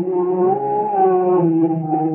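Male voice singing one long held note in Arabic classical style, the pitch wavering and bending slightly. It is an old recording with a narrow, muffled sound.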